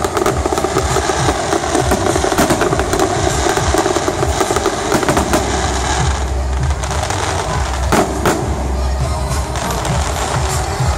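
Aerial fireworks bursting in quick succession: a dense run of popping and crackling reports, with music continuing underneath.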